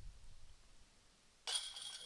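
A disc golf putt striking the chains of a metal basket about one and a half seconds in: a sudden metallic chink and jingle that rings briefly and fades, the sound of the putt going in.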